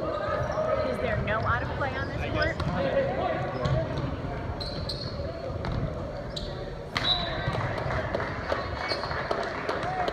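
Indoor volleyball rally on a hardwood gym floor: sharp ball hits and sneaker squeaks over the chatter and calls of players and spectators echoing in the hall. The sharpest hit comes about seven seconds in.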